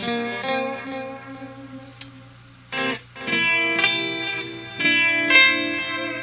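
Fender Stratocaster electric guitar played fingerstyle: a blues phrase of single plucked notes, a brief lull a little past two seconds in, then a louder run of notes.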